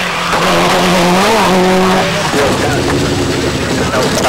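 Toyota Celica rally car's engine at speed on a tarmac stage. The note holds steady, rises briefly about a second in, then drops to a lower pitch just after two seconds, as the car passes or shifts gear.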